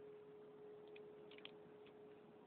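Near silence with one faint, steady held tone, and a few faint ticks about a second and a half in.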